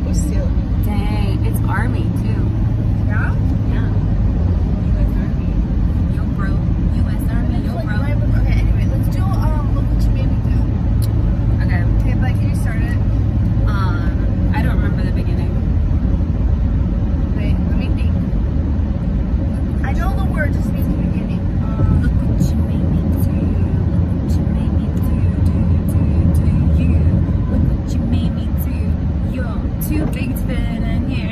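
Steady low rumble of a car driving, heard from inside the cabin, with scattered snatches of voices over it.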